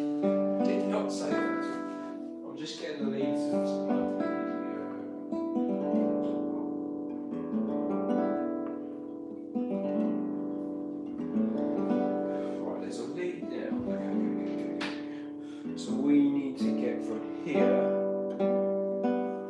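Acoustic guitar played slowly, with chords strummed every second or so and left to ring through a gentle progression.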